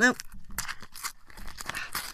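Foil Panini sticker packet crinkling as it is torn open by hand: an uneven run of sharp crackles and rips.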